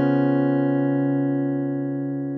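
Acoustic guitar chord strummed once and left ringing, slowly fading, with no new strum.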